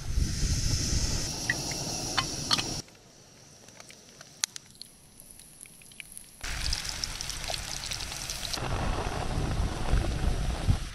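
Portable remote-canister gas camping stove running with a steady rushing hiss. It drops away abruptly for about three and a half seconds in the middle, when only a few light clicks are heard, then comes back.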